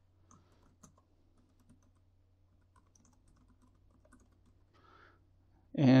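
Faint, scattered keystrokes on a computer keyboard as a short title is typed, over a low steady hum.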